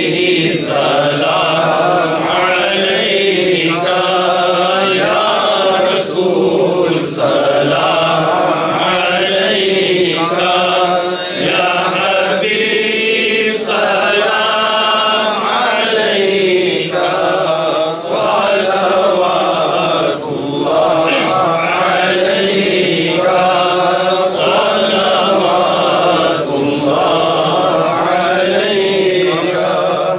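Men's voices chanting a devotional recitation into microphones, a melodic line rising and falling with no pause. It fades out at the very end.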